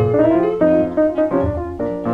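Blues piano playing an instrumental fill between sung lines, with a chord struck at the start and new notes about every half second, over guitar and a low bass part, on a 1941 recording.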